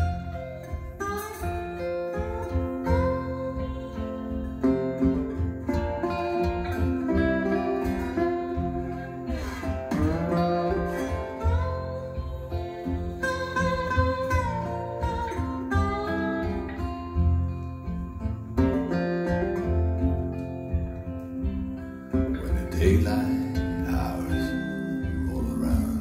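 Recorded blues music played back through a ThivanLabs S3 two-way bookshelf loudspeaker in a room: an instrumental guitar break, plucked guitar lines with gliding slide notes over a steady bass.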